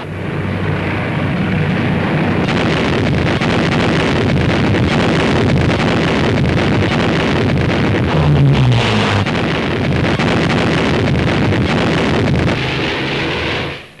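Piston aircraft engines running in a steady, loud roar, with a falling pitch just after eight seconds in as a plane passes over.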